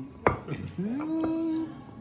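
A ceramic plate set down on a wooden table with a single sharp clunk, followed by a person's drawn-out 'mmm' hum lasting about a second.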